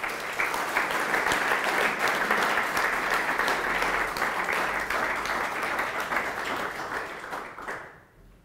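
Audience applauding: dense, steady clapping from many hands that tapers off and stops near the end.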